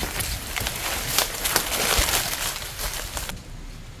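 Footsteps crunching through dry leaves and brush on a forest path, with many small crackles of twigs and leaves, cutting off suddenly a little over three seconds in.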